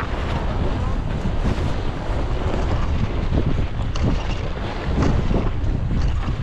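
Wind buffeting the camera's microphone: a steady, deep rumbling noise.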